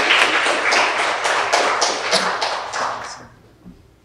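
Audience applauding, the clapping thinning out and stopping about three seconds in.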